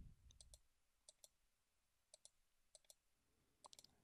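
Faint computer mouse clicks, each a quick press-and-release pair, about five times, as the graph's zoom buttons are clicked; otherwise near silence.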